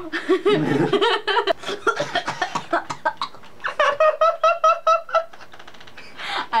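Two people laughing together, a man and a woman, ending in a quick run of short, even 'ha-ha' pulses.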